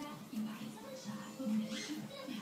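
A voice making sounds without clear words, over background music.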